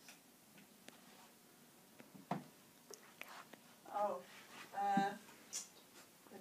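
Soft, hushed voice: two short utterances about four and five seconds in, after a quiet stretch with a few faint clicks.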